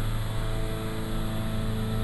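Twin turbocharged piston engines of a Cessna 421C running steadily in cruise, heard inside the cockpit as an even, unchanging hum.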